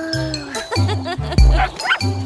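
Cartoon background music with a bouncy repeating bass line and tinkling notes, overlaid with sliding-pitch sound effects. A low thud that falls in pitch comes about one and a half seconds in.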